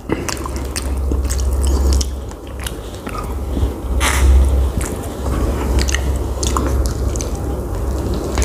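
A person chewing and eating close to the microphone: wet mouth smacks and many short clicks over a low rumble, with a louder wet burst about four seconds in as a spoon goes into the mouth.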